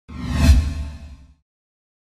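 Logo-animation whoosh sound effect: a single swelling swish over a deep rumble, peaking about half a second in and fading out by about a second and a half.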